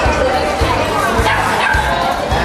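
Background music over crowd chatter, with a dog barking.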